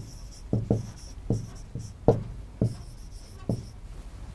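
A pen writing words by hand on a board: about nine sharp taps of the tip landing on the surface at an uneven pace, with short light scratching strokes in between.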